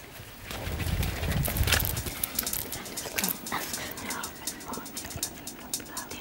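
Children's footsteps and bustle as they hurry across a studio stage, a low rumble in the first two seconds. This gives way to rustling of paper and scattered small clicks of pens and writing pads.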